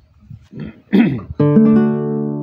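Nylon-string classical guitar: a chord is strummed about one and a half seconds in and left ringing, the opening chord of a song. Just before it, a short laugh.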